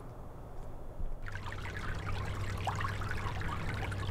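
Water trickling, starting about a second in, over a low steady hum.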